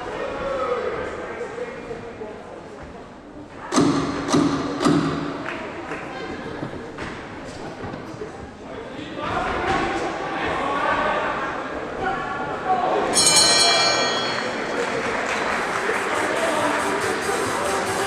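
Three sharp knocks about four seconds in, then a bell ringing briefly near thirteen seconds in, marking the end of a boxing round. Hall crowd voices and music run underneath.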